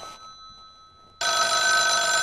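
Telephone bell ringing in a steady ring that begins just over a second in, after a short click and a quiet fading tail of the previous ring.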